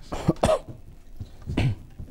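A person coughing: two quick coughs in the first half second, then another about a second later.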